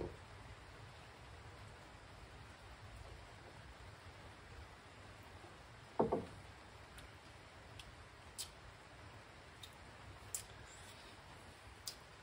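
Faint steady background hum in a quiet room while a beer is silently tasted, broken by one short louder sound about halfway through and a few faint ticks in the second half.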